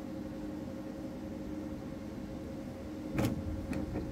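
Steady low background hum with a couple of faint level tones running through it; a woman speaks briefly near the end.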